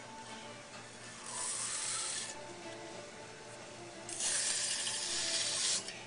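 Wooden tool scraping clay from the foot of a bowl on a spinning potter's wheel, in two strokes: a short one of about a second, then a louder one of nearly two seconds.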